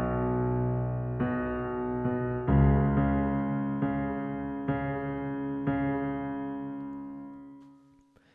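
Korg SV1 stage piano played with the left hand alone: low chords through A, E, B suspended and C-sharp minor, struck about once a second. The last chord is left to ring and dies away near the end.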